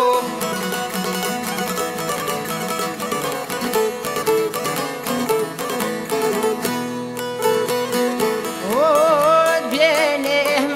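Albanian folk ensemble of long-necked plucked lutes (çifteli and sharki) playing a fast, busy instrumental passage. Near the end a man's singing voice comes back in with a rising note, held with vibrato.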